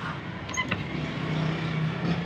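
A low, steady motor hum, like an engine running, that grows louder in the second half. A few short, high squeaks come about half a second in.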